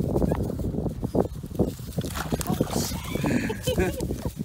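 A dog whining at the water's edge, with rustling and footsteps in dry grass.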